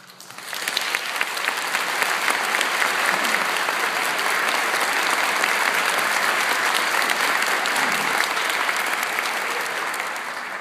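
Audience applause breaking out as a concert band's piece ends, building over the first second and then holding steady.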